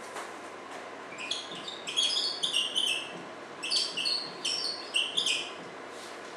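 Dry-erase marker squeaking on a whiteboard while figures are written, in two runs of short, high squeaks: one starting about a second in and another about three and a half seconds in.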